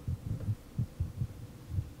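A run of low, dull thumps at an irregular pace, several a second.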